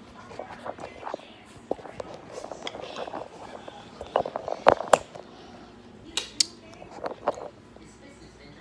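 Handling noise from a phone that is filming: fingers rubbing and knocking against it as it is gripped and moved about, with several sharp taps in the second half.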